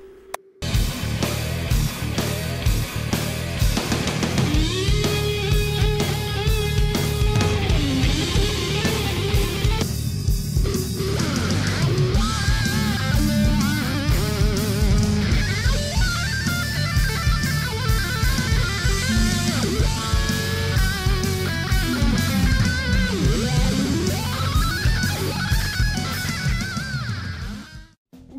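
Electric guitar played through Vox JamVOX amp modelling along with a rock backing track, with a wah effect swept by a foot-operated expression pedal. About ten seconds in the middle of the mix drops out for roughly a second, where the song's original lead guitar is cut away by the software's guitar-extraction function.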